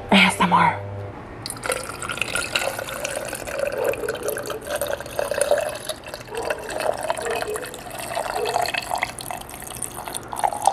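Water poured from a small plastic bottle into a stainless steel tumbler, splashing continuously from about a second and a half in, as the tumbler is refilled.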